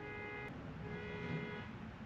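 Faint vehicle horn sounding twice, a short toot and then a longer one about a second in.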